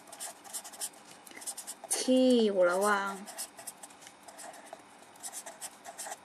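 Pen writing on paper in a run of short strokes. A woman's voice speaks briefly about two seconds in.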